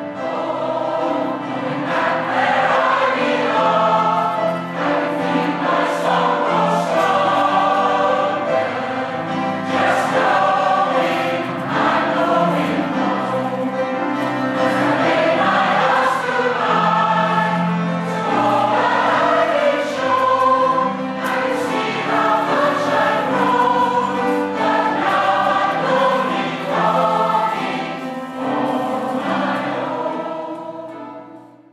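A large mixed community choir singing a song together in held harmonies, the sound rising in at the start and fading out at the end.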